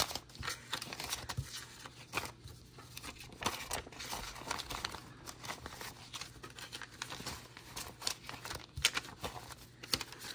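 Paper dollar bills rustling and flicking as they are counted by hand: a run of soft, irregular crinkles and snaps.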